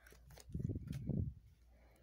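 Tarot cards being handled and drawn from the deck: soft, low sounds of cards sliding against each other in the hands, with a few faint clicks.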